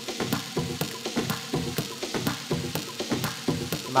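Techno track playing through the DJ decks, a steady beat of hi-hat ticks about four times a second with no bass kick in it.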